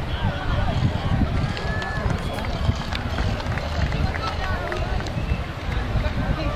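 Several voices shouting and calling out at once from players and onlookers at a rugby match, over a steady low rumble.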